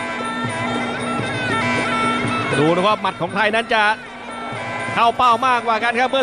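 Traditional Muay Thai ring music (sarama): the nasal, wailing pi java oboe plays a sustained melody that bends up and down in pitch.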